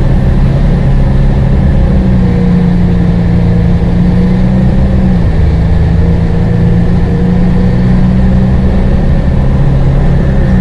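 Cabin noise inside a moving TransJakarta city bus: a loud, steady low engine drone over road noise, its pitch dropping slightly about five seconds in.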